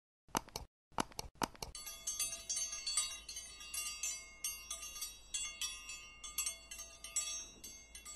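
Subscribe-button animation sound effect: a few quick clicks in the first second and a half, then a busy run of bright, tinkling chime strikes.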